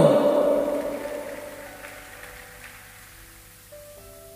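A woman's sung note glides down in pitch and fades away over the first second or two, leaving soft background music of long held notes; a new chord comes in near the end.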